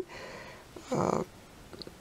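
A short, low, rasping breath, about half a second long, about a second in, with a tiny click near the end.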